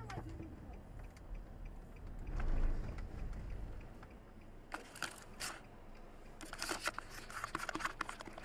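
A run of sharp clicks and knocks inside a car cabin, starting about halfway through, over a low rumble.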